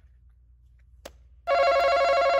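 An electronic game buzzer sounds once, a steady buzzing tone held for about a second and a quarter that starts abruptly about a second and a half in and cuts off sharply. A faint click comes just before it.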